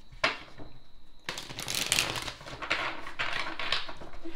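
A deck of tarot cards being shuffled by hand: a dense, rapid papery rattle of cards that starts about a second in and keeps going.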